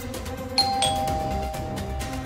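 Two-note 'ding-dong' doorbell chime: a higher note about half a second in, then a lower note a quarter second later, both ringing on and fading slowly, over background music.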